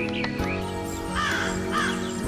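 Crow giving two harsh caws a little over a second in, heard over sustained instrumental music.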